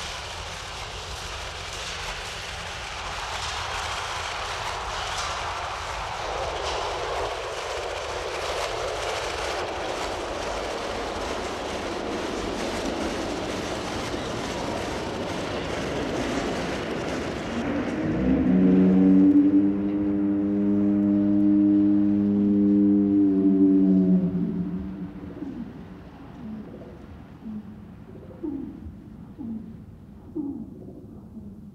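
Film soundtrack: a swelling wash of hissing noise, then about two-thirds of the way in a loud chord of several steady tones that holds for about six seconds and fades into short gliding tones.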